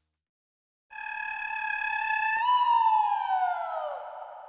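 A comic sound effect: a whistling electronic tone that starts about a second in, holds steady, then slides down in pitch toward the end.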